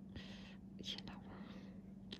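Faint whispering in a few short, breathy bursts over a steady low hum.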